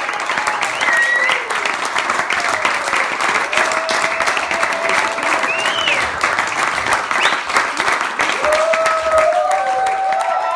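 Small audience applauding steadily after a song, with voices calling out and cheering over the clapping.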